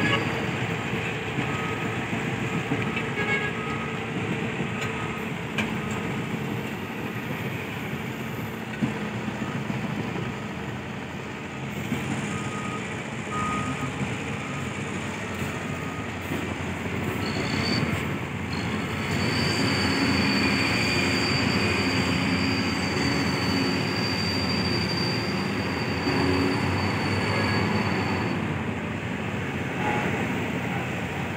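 Steady mechanical din of cargo-loading machinery and vehicle engines running. A thin, steady high whine sounds from a little past halfway until near the end.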